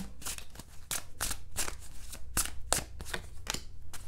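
A deck of tarot cards being shuffled by hand: a quick, irregular run of soft card flicks and slaps, about four or five a second.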